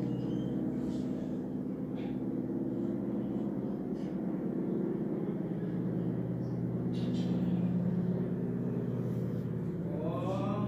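A steady low hum made of several even tones, with a few faint clicks over it.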